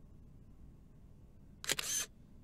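Smartphone camera shutter sound, one brief click-clack near the end as a photo is taken.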